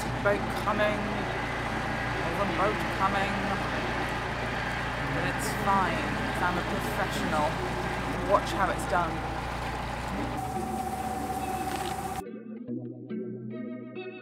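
A narrowboat's diesel engine running with a steady low drone at a slow cruising pace, with birds chirping over it. The sound cuts off about twelve seconds in and background music with guitar takes over.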